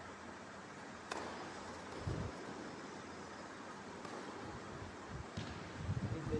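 Tennis rally on an indoor hard court: a sharp racket-on-ball strike about a second in, then a few softer ball hits and bounces, over a faint hiss of hall room tone.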